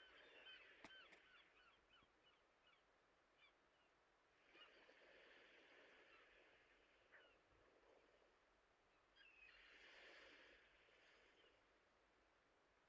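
Near silence: faint room tone with a few faint, soft hissing patches.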